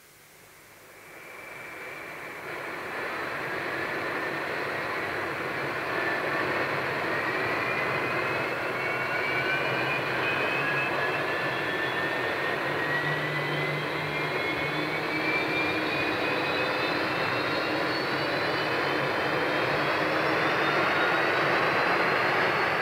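Jet engines of a Hawker Siddeley Trident airliner spooling up before takeoff: a rushing whine that fades in and grows louder over the first few seconds, then keeps rising slowly and steadily in pitch.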